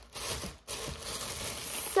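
Clear plastic packaging crinkling and rustling as it is handled, with a short pause about half a second in.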